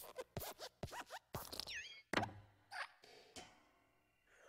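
Cartoon sound effects of the animated Luxo Jr. desk lamp hopping on the letter I: a quick run of springy squeaks and light knocks, then a heavier thump about two seconds in as the letter is squashed flat, followed by a few softer creaks and knocks that fade.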